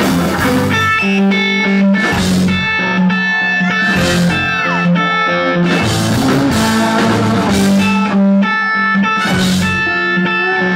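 Live blues-rock band playing, with electric guitars holding sustained lead notes over bass and drums. One guitar note slides down in pitch about four seconds in, and cymbal crashes come every couple of seconds.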